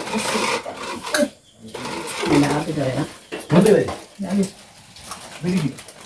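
Indistinct voices talking in a small room, with short spoken bursts and some handling noise in between.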